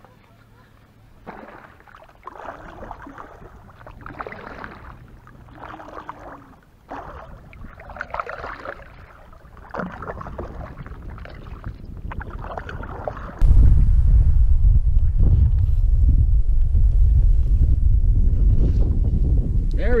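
Kayak moving on open water, with uneven water and hull sounds. About two-thirds of the way in, the sound jumps to a loud, steady rumble of wind buffeting the microphone.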